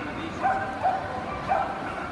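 A dog barking three short times, over the steady chatter of a crowded hall.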